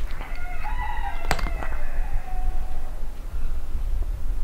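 A cat's long, drawn-out yowl lasting about three seconds, with a sharp click about a second in.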